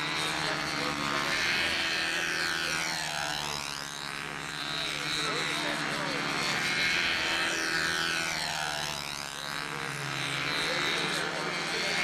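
Twin-engine four-wing control-line model airplane flying laps, its two small engines running steadily at full power. The drone sweeps in tone twice, about six seconds apart, as the plane comes round the circle.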